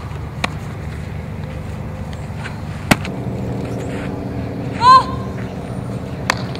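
A single sharp crack about three seconds in, typical of a bat hitting a softball for a fly-ball drill, over a steady low background hum. About two seconds later comes a brief, loud, high-pitched call that rises and falls, the loudest sound here.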